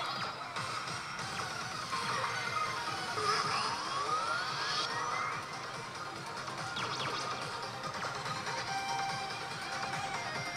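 Pachislot machine's game music and electronic sound effects over the din of a pachinko hall, with a rising sweep effect about three seconds in.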